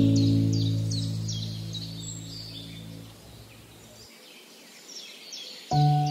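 A soft piano chord fades out over about three seconds, then after a short gap a new chord is struck near the end. Small birds chirp and twitter throughout, mixed under the music.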